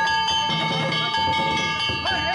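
Hand-struck metal gongs (kane) of a danjiri festival float ringing under rapid repeated strokes. The strokes keep a steady, bright metallic ring going.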